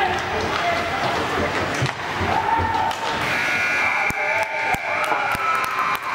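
Hockey rink sound during an ice hockey game: indistinct voices and shouts of spectators and players, with sharp clicks of sticks and puck. A steady high tone joins about three seconds in.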